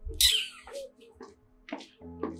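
A short, sharp hissing vocal sound from a person about a quarter second in, then a few small vocal noises, over faint steady background tones.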